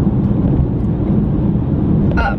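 Steady low road rumble inside a moving Mercedes-Benz car's cabin, with no change in pitch or level.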